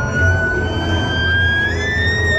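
A rider screaming on a fairground hammer ride: one long, high scream held for several seconds, rising slowly in pitch, over the steady low rumble of the ride.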